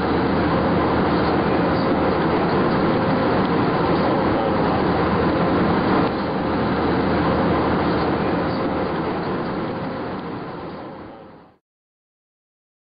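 Steady rumbling noise of a moving vehicle, even throughout, fading out just before the end.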